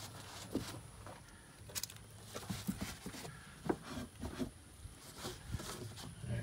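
Faint rustling and a few light, scattered clicks of a cloth rag wiping excess spray lubricant off a car's liftgate hinge pivots and lift-assist strut.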